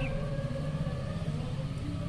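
A steady low rumble in the background.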